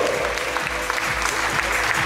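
An audience applauding, with music playing underneath.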